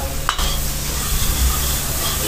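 Butter with garlic and ginger sizzling in a large iron kadai as it is stirred with a metal ladle, with one short knock about a third of a second in.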